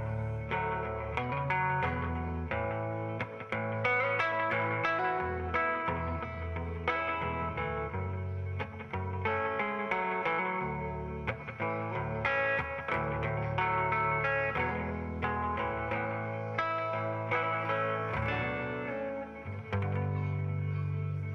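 Hollow-body archtop electric guitar played instrumentally: a quick run of picked notes over held low notes.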